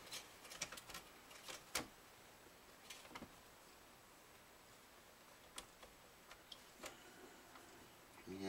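Faint, scattered small clicks and taps of hands handling a guitar while setting its pickguard in place under loosened strings. The sharpest tick comes a little under two seconds in.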